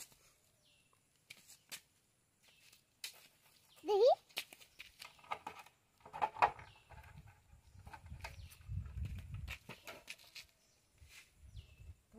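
Scattered short clicks and knocks from hand work on a Hero Honda Splendor motorcycle's side panel as it is being opened, with a low rumble from about seven to nine and a half seconds.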